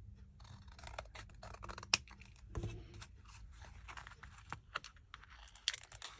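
Stickers and papers being handled: crinkly rustling with many small irregular clicks and taps, and a sharper tap about two seconds in.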